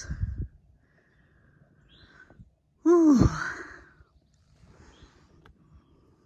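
A woman's voiced sigh about three seconds in: one short, breathy exhale whose pitch falls steeply, the loudest thing here. Around it there is only faint outdoor quiet.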